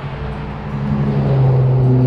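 Steady low engine hum of road traffic, getting louder in the second half.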